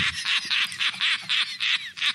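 A high-pitched, duck-like squawking cackle: a rapid run of short squawks, about five a second, each falling in pitch.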